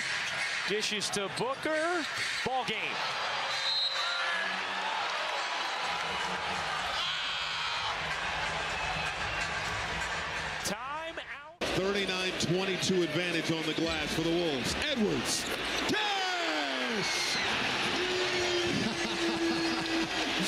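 Televised NBA game sound: an arena crowd, sneakers squeaking on the hardwood and a basketball bouncing, with a commentator's voice at times. About halfway through the sound cuts out abruptly and comes back as another, somewhat louder arena crowd.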